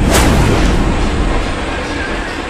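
A sudden loud boom just after the start, followed by a deep low rumble that carries on.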